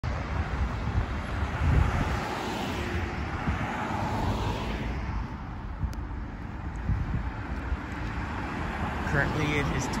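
Street traffic: cars passing close by on the road alongside, with tyre and engine noise, loudest in the first five seconds and easing off after. A voice starts just before the end.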